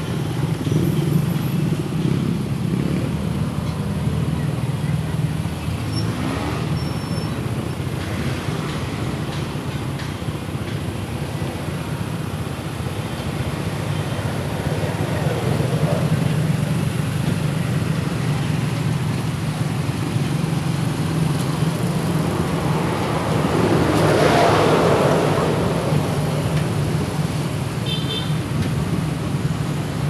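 Congested street traffic heard from among slow-moving vehicles: a steady low engine drone, with a louder vehicle swelling past a little over three-quarters of the way through and a brief high beep near the end.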